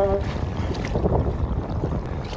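Wind buffeting the microphone over choppy lake water, with water sloshing and splashing. A steady hum cuts out just after the start.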